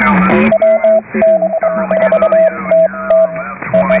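Shortwave amateur radio heard through a lower-sideband receiver: a fixed-pitch Morse code tone keyed on and off in dots and dashes, starting about half a second in, over band noise and a steady low hum, with a faint garbled voice underneath.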